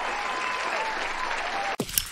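Crowd applauding steadily, cut off suddenly near the end by sharp clicks and a sweep as an outro sting begins.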